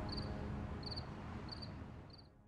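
A cricket chirping in a steady rhythm, a short pulsed chirp about every two-thirds of a second, faint, over the tail of the background score as it fades out.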